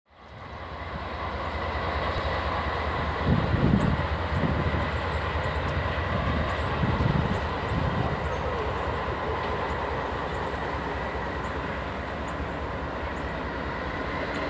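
Norfolk Southern GE CW40-9 diesel locomotive approaching at low speed: a steady engine rumble and drone that fades in over the first second and swells a few times in the low end.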